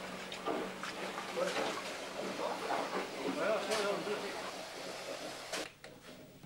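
Indistinct voices talking quietly, with a low steady hum in the first second and a half and a few knocks, the sharpest near the end.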